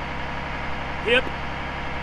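Fire apparatus engine idling, a steady low hum that stays unchanged under a man's voice.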